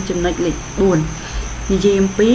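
A person speaking Khmer in short phrases, with a pause in the middle. A steady high-pitched whine runs beneath the voice without a break.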